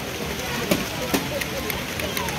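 LEGO train freight cars rolling past on plastic track, a steady rattling with a couple of sharp clicks, over voices in the hall.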